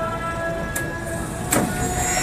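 Passenger train coach running on the rails, heard at an open door: a steady rumble with a thin whine over it. There is a sharp click about three quarters of a second in and a louder clank about a second and a half in.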